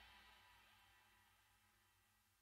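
Near silence: the last of a rock song's ring-out fades away in the first moment, then nothing.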